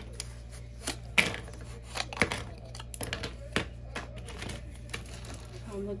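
Clothespins clicking and knocking as they are handled at a metal wreath ring: a series of irregular sharp clicks.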